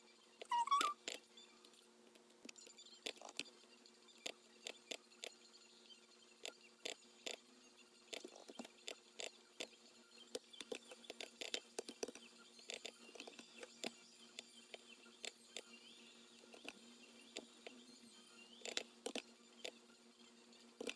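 Computer mouse clicking over and over at an irregular pace, faint, over a low steady electrical hum. A brief high squeak about a second in is the loudest sound.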